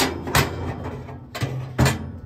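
Thick sheet-steel flame-broiler plate of a Pit Boss pellet grill clanking against the grill body as it is lifted out of the cooking chamber: two sharp metal clanks at the start and one near the end, with a scraping slide between.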